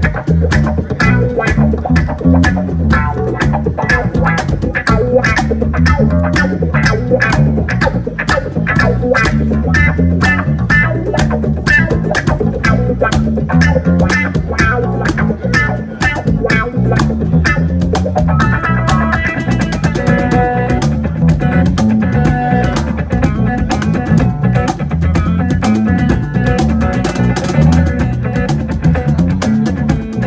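Live instrumental jam on cigar box guitars: a cigar box guitar lead over a deep bass cigar box, driven by a steady beat on a Tycoon Percussion cajon. A little over halfway through, the guitar moves into a brighter, busier melodic line.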